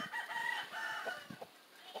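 A rooster crowing: one drawn-out call lasting about a second, fainter than the voice around it.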